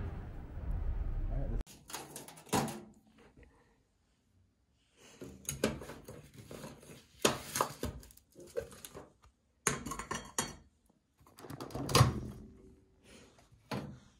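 Wind rumbling on the microphone for about the first second and a half, then a scattered series of knocks, clunks and clinks: a glass food container with a plastic lid and a microwave door being handled.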